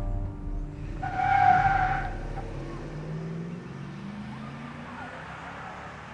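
A pickup truck pulling away hard: a brief tire squeal about a second in, then its engine accelerating away and fading into the distance.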